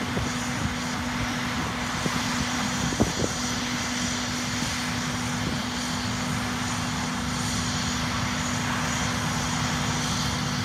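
Steady hiss of a fire hose spraying water and foam over a steady engine drone, with a couple of sharp knocks about three seconds in.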